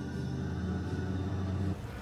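Car running, heard from inside the cabin as a steady low hum, cutting off abruptly just before the end.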